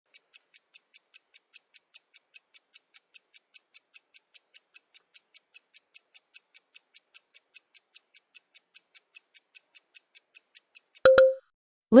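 Countdown-timer ticking sound effect: quick, even high ticks at about five a second, ending near the end in a short beep.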